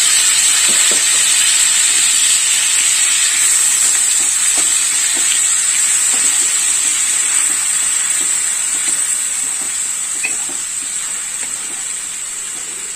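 Onion paste sizzling and frying in hot oil with cumin seeds in a nonstick kadai, stirred now and then with a wooden spatula. The sizzle is steady and slowly dies down toward the end.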